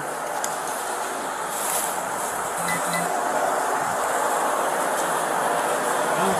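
Steady rushing air noise from a large industrial drum fan and ceiling fans, heard through a police body camera's microphone.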